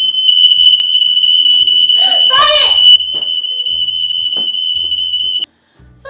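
Smoke alarm sounding one steady, high-pitched tone, set off by smoke from marshmallow s'mores burning in a toaster bag. It cuts off suddenly near the end. A woman's voice cries out briefly midway.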